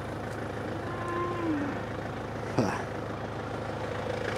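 A cow lowing: one rising-and-falling call about a second in, over a steady low hum, followed by a short call that drops in pitch a little past halfway.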